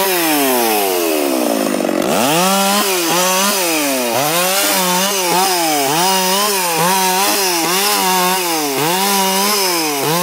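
A Stihl 660 two-stroke chainsaw cutting branches. In the first two seconds the engine winds down, then it revs back up to full speed and keeps dipping under load and recovering, about twice a second, as the chain bites through the limbs.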